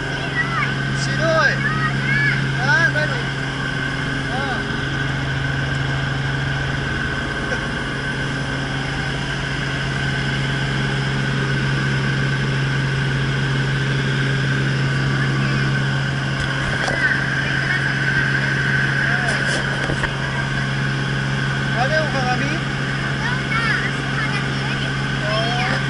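Robinson R44 helicopter heard from inside the cabin in flight: the steady drone of its piston engine and rotors, a constant low hum with a steady higher whine over it.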